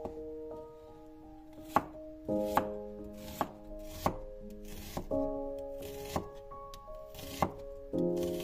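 A large kitchen knife slices through a peeled onion and knocks on a wooden cutting board, making about seven sharp cuts roughly a second apart. Soft background music with held notes plays underneath.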